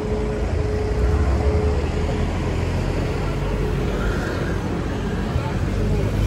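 Street traffic rumbling as a Rolls-Royce Cullinan moves off slowly and passes close by, its twin-turbo V12 barely heard under the tyre and road noise; the low rumble swells about a second in, then stays steady.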